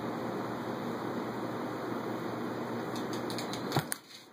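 Steady background hiss, then near the end a few light ticks and one sharp click as a golf club strikes a small practice golf ball on carpet.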